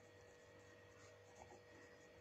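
Near silence: faint room tone with a steady hum and a few faint scratches, typical of a pen writing on paper.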